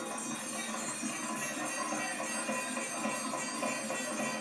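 Live baithak gana music: harmonium playing with dholak drumming, a steady dense texture.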